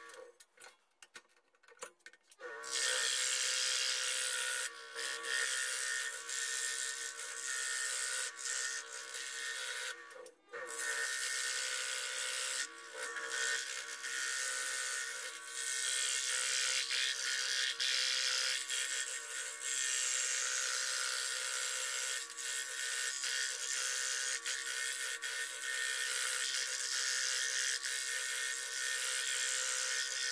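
Scroll saw running with a steady buzz as its blade cuts a thin wooden piece. The sound drops away for a couple of seconds at the start and again briefly about ten seconds in.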